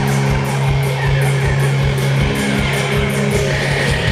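Live heavy rock band playing an instrumental passage: distorted electric guitars and bass guitar hold low notes over a steady drum beat, recorded from among the audience.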